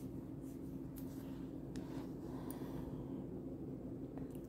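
Wooden spatula stirring and scraping a dry, crumbly spiced moong dal filling around a pan, faint scratchy strokes while the spices are roasted into it. A steady low hum runs underneath.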